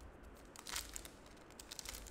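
Foil wrapper of a trading-card pack crinkling faintly as it is handled and torn open, with a couple of brief crackles about two-thirds of a second in and near the end.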